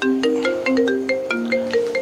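Mobile phone ringtone playing a marimba-style melody of short struck notes, repeating: an incoming call.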